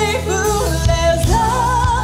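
A song sung live with a band behind it; the singer holds notes with a wavering vibrato.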